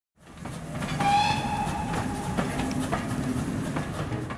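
A train whistle blowing once for about a second, starting about a second in, over the steady rumble and a few clicks of a train running.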